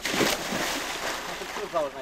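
A person jumping feet-first into the sea: one loud splash just after the start, then the churned water hissing as it settles. A short call from a voice comes near the end.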